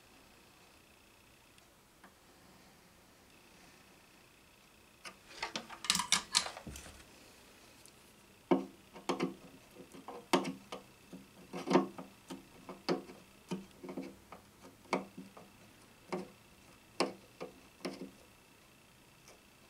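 Hands and a small tool handling an acoustic guitar at the neck joint: a brief scraping rustle, then a string of irregular sharp taps and clicks against the fingerboard, each ringing briefly through the guitar's body.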